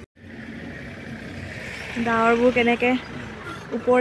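Wind buffeting the microphone: a steady rushing noise that begins right after a cut, with a voice calling out briefly about two seconds in.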